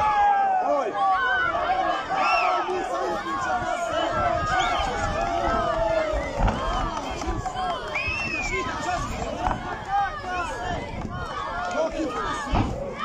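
Crowd of spectators shouting and cheering, many men's voices overlapping throughout, with a dull low thump about six and a half seconds in.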